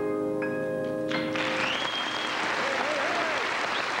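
Final piano chord of a slow ballad ringing on, with two high notes added, then audience applause breaking out about a second in, with a brief whistle from the crowd.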